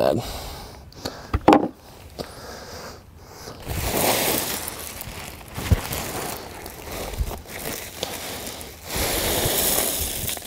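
A sack handled and lifted with rustling and a few knocks, then small rocks poured from the sack into a plastic valve box as a steady hiss near the end.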